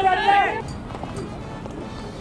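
A voice trailing off in the first half second, then faint, steady outdoor background noise with no distinct event.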